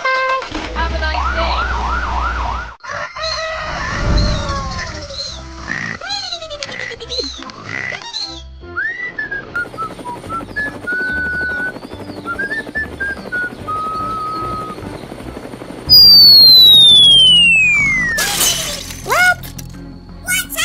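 Cartoon sound effects over light background music: a repeating siren-like warble at the start, a whistled tune in the middle, and a loud falling whistle about sixteen seconds in, followed by a short burst and a quick rising glide.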